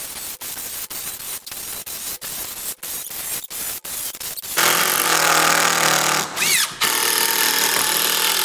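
DeWalt cordless impact drivers (a 20 V DCF787 and a compact 12 V DCF801) hammering screws into a timber beam. For the first half they stop and start in short runs, then from a little past halfway comes a louder, unbroken run of hammering.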